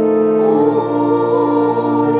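Church music: several voices singing in harmony, holding long chords, with a change of chord about half a second in.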